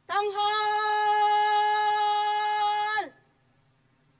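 A drill commander's shouted preparatory command, drawn out as one long held note for about three seconds, scooping up at the start and dropping away at the end.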